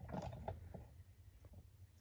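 Faint handling noises: a few light, scattered clicks and knocks.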